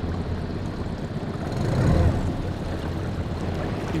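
Tohatsu 20 hp four-stroke outboard motor running at low trolling speed, a steady low hum that swells briefly about halfway through.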